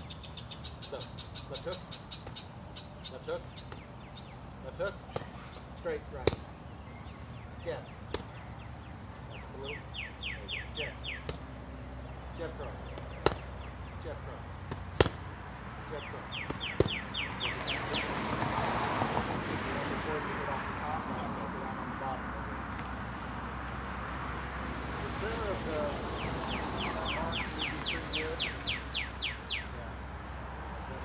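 Punches landing on a handheld boxing focus mitt: sharp slaps every second or two, a few much louder than the rest. A vehicle passes on the road about eighteen seconds in.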